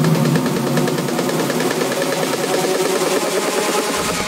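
Techno track in a breakdown with its bass and kick drum cut out on the DJ mixer, leaving a dense, fast-pulsing, noisy mid and high texture.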